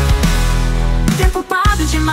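Music: a Portuguese pop song with sustained bass notes, dropping out briefly about one and a half seconds in before the sung melody comes back.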